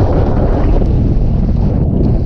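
Wind roaring over an on-board camera microphone as a downhill mountain bike descends at speed, mixed with the bike rattling over a rough dirt and gravel track. Loud and steady throughout.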